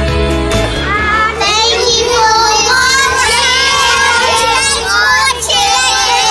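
Montage music in which a guitar backing gives way, about a second in, to a group of children's high voices singing together with long, wavering held notes.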